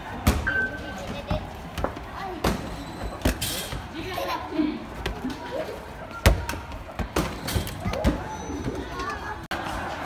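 Basketballs thudding and knocking at irregular intervals as they bounce off backboards, rims and the floor, the loudest hit about six seconds in, amid children's voices.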